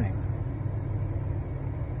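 Steady low rumble and hiss of car cabin noise.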